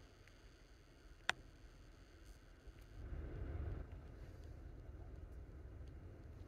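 Quiet car interior: a single sharp click about a second in, then a faint low rumble that swells for about a second around the middle.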